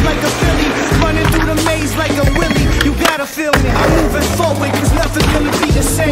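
Skateboard sounds, wheels rolling on concrete and sharp clacks of the board popping and landing, over a loud hip-hop instrumental with a steady bass line that drops out briefly about three seconds in.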